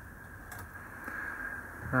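Quiet room tone with faint handling of small engraved sample pieces on a wooden workbench, including one light click about half a second in.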